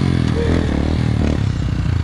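Motorcycle engine running steadily at low revs.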